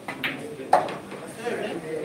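A pool shot: a light click of the cue tip on the cue ball, then a sharp, loud clack of ball striking ball about three-quarters of a second in, over the murmur of an onlooking crowd.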